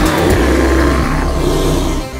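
A roaring sound effect, in the manner of a bear's roar, with a low rumble beneath it. It sets in sharply and dies away near the end.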